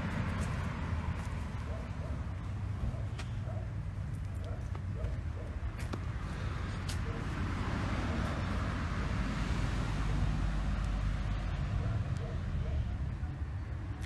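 Steady low outdoor rumble of distant traffic, swelling somewhat in the second half, with faint far-off voices and a few small clicks.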